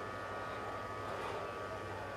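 Steady low background noise with a faint low hum, and no distinct sound event.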